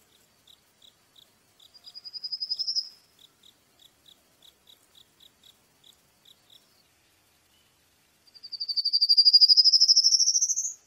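Songbird calling: short high chirps repeating about three times a second, and a fast high trill that rises in pitch about two seconds in. A louder, longer rising trill comes near the end.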